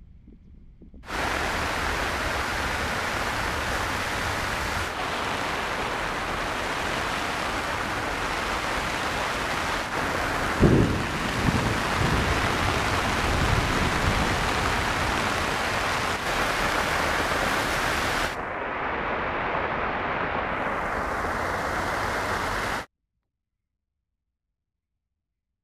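Heavy rain falling as a steady, loud hiss, with a few low knocks about halfway through. It stops abruptly near the end.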